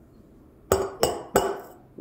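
Stainless steel milk jug of frothed milk knocked three times on the countertop, each knock a sharp clank with a short metallic ring, to break up air bubbles in the milk froth.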